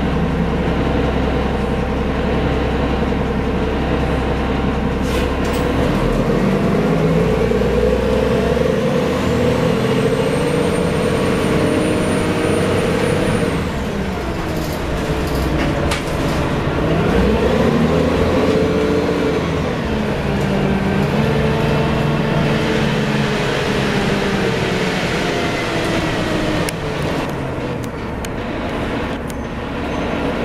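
Cabin sound of a 1990 Gillig Phantom transit bus under way, its Cummins L-10 diesel driving through a Voith D863.3 automatic transmission. The engine note climbs steadily as the bus gathers speed, with a faint high whine rising with it. Halfway through the note drops sharply, then rises and eases off again.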